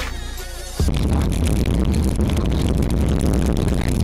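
Music that gives way, under a second in, to a loud, steady, deep rumble of in-car noise. This is a car driving on a snowy road, picked up by a dashcam microphone.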